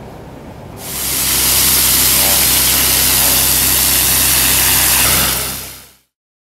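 High-pressure water jet blasting from a hand lance: a loud, steady hiss of spray over the steady drone of the engine-driven high-pressure pump unit. It starts abruptly about a second in and fades out near the end.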